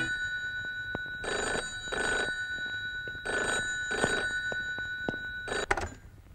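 Telephone ringing in a double-ring pattern: two pairs of short rings with a pause between them, then a few clicks near the end as the corded handset is picked up.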